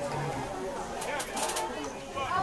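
Indistinct chatter of spectators' voices, with a few short sharp clicks about a second in.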